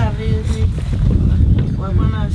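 Wind rumbling on the microphone, a steady low buffeting, with voices speaking at the start and again near the end.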